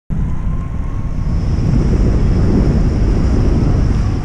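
Wind buffeting a camera microphone: a loud, steady, rough rumble that cuts in abruptly right at the start.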